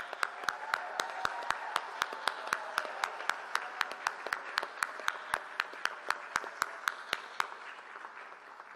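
Crowd applauding in a large hall, with one person's claps close to the microphone standing out at about four a second. The applause dies away near the end.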